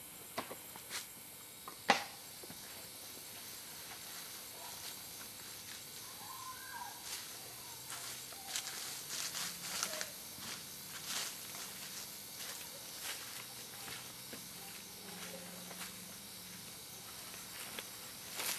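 Footsteps and shuffling on open ground with scattered clicks, a sharp click about two seconds in and denser clicks in the second half, over a steady hiss.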